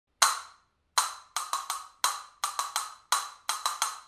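Castanets clacking in a repeating rhythm: after a single opening clack and a pause, single clacks alternate with quick groups of three, about one figure per second, each stroke sharp with a short ringing tail.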